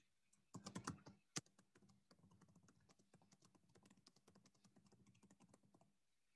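Computer keyboard typing picked up faintly by a webcam call microphone: a louder cluster of keystrokes about half a second in, one sharp key strike just under a second and a half in, then a run of light, rapid keystrokes that stops near the end.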